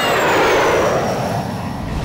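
Jet airliner flyby sound effect: a rushing noise that peaks about half a second in, with a whine falling in pitch as the plane passes, then slowly fading.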